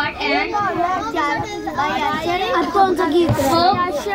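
Speech only: a girl reading aloud into a microphone.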